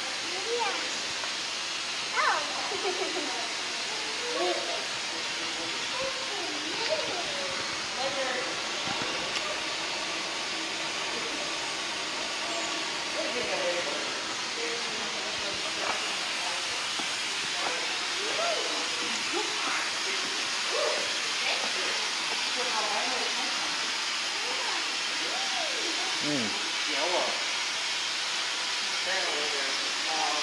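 Steady hissing background noise with scattered, indistinct voices of people talking.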